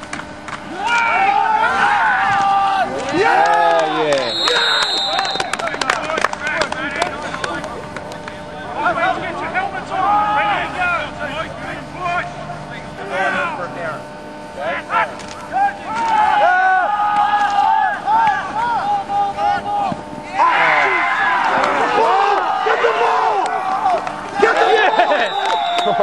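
Voices of players and spectators at an American football game calling and shouting across the field, with a thicker stretch of overlapping yelling about twenty seconds in.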